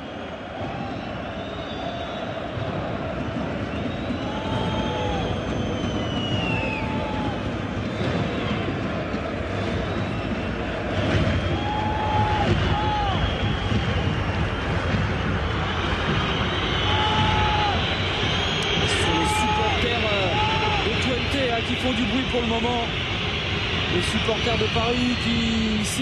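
Football stadium crowd chanting, the noise growing louder over the first few seconds, with drumming from the visiting supporters' stand.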